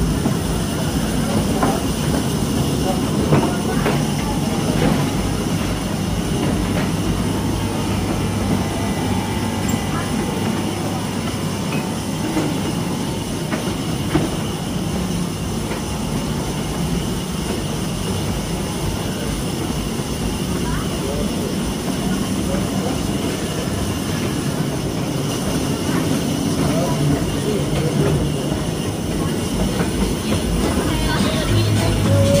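Small amusement-park ride train running along its narrow track: a steady rumble with scattered clicks and knocks from the wheels and cars.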